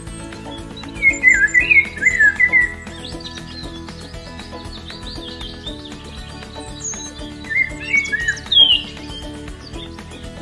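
Background music, with two bursts of short, quick bird chirps, about a second in and again around eight seconds in.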